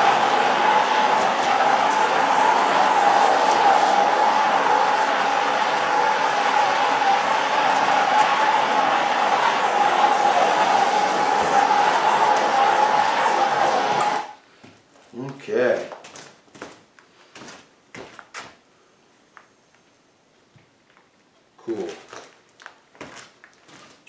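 Handheld gas torch burning with a steady hiss and a held tone as its flame is swept over wet epoxy to pop the air bubbles; it cuts off suddenly a little over halfway through. A few faint clicks and knocks follow.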